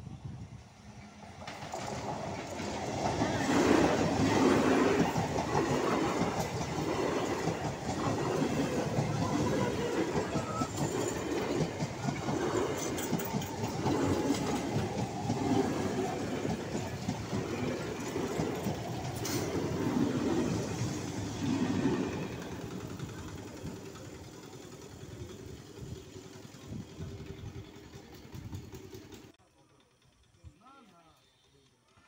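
Electric suburban multiple-unit passenger train passing close by, its wheels clattering rhythmically over the rail joints. The noise builds over the first few seconds, holds while the coaches go by, then fades after about twenty seconds and cuts off sharply just before the end.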